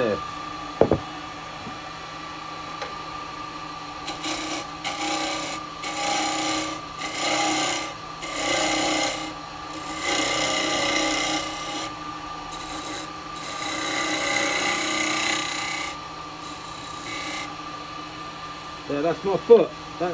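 Wood lathe running with a steady hum while a carbide cutter cuts the foot on a spinning wet-wood bowl blank. After a single sharp knock just under a second in, the cutter makes a series of rasping scrapes from about four seconds in, each pass lasting a second or two with short pauses between, and stops a little before the end.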